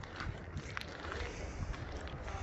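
Wind buffeting the microphone over a low, steady background rumble, with a faint click a little under a second in.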